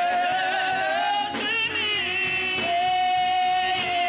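Gospel praise team singing long held notes with vibrato, several voices together, backed by keyboard.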